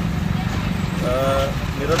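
A man speaking over a steady low engine rumble from nearby road machinery or traffic.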